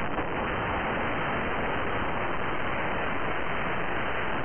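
TV static sound effect: a steady hiss of white noise.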